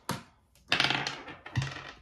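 A small die thrown onto a wooden tabletop, clattering in a quick run of ticks as it bounces and tumbles about halfway through, with a sharper knock just after.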